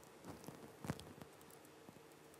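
Quiet room tone with a faint steady hum and a few soft clicks and knocks, the loudest about a second in.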